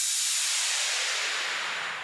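A hiss from an edited segment-transition effect, a noise wash left over from a short musical stinger, fading away steadily.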